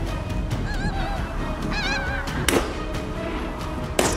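Pink-footed geese calling in flight: several short, high, wavering honks in the first half, with a single sharp crack about halfway through.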